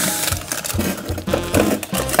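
Plastic tub of frozen ice cream scraping and knocking against a plastic freezer drawer as it is worked loose, a run of irregular clicks and rattles.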